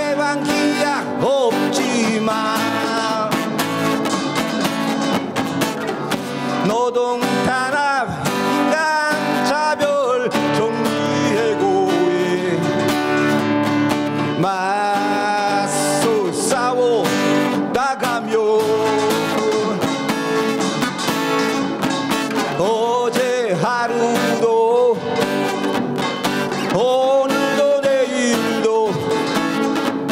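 Live fusion pungmul band playing a song: a voice singing with wavering, drawn-out notes over strummed acoustic guitar, backed by Korean gongs and janggu drums.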